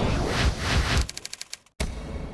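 Electronic outro sting: a loud rush of noise, then a rapid stutter of clicks that cuts off suddenly, then a single hit that rings out and fades.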